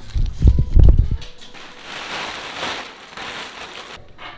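Handheld camera being moved about: a burst of loud, deep thumps on the microphone for about the first second, then a rustling hiss.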